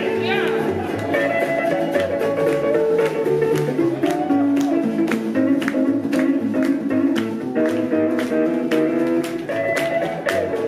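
Live band playing an instrumental passage: acoustic guitar strummed in a steady beat, with electric guitar and upright bass.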